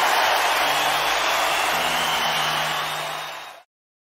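End of a live recording: audience applause and cheering over faint held low notes of the band, fading and then cutting off abruptly to silence about three and a half seconds in.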